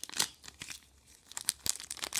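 Thin clear plastic packaging crinkling as hands work open a small zip bag and sleeve. There is an irregular run of sharp crackles, busiest shortly after the start and again through the second half.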